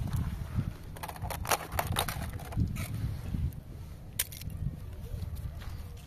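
Wind rumbling on the microphone outdoors, with a run of crunches and crackles about a second in and a sharp click near four seconds, like footsteps and handling on dry, stony ground.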